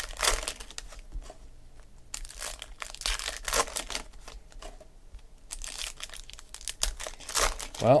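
Foil trading-card pack torn open and its wrapper crinkled by hand, in irregular rustles and crackles. A short spoken word comes in near the end.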